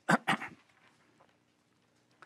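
A man clearing his throat: two or three short, rough rasps in the first half second. After that only a faint steady hum remains.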